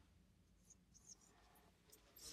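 Near silence with faint, short strokes of a marker pen writing on a whiteboard.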